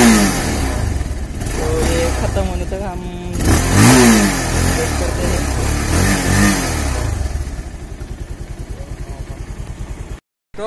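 Bajaj Pulsar 220F's single-cylinder four-stroke engine blipped on the throttle several times, the pitch rising and falling with each rev, then left running at an uneven, pulsing idle over the last few seconds. It is being run on the last petrol in the carburettor after the tank has been drained.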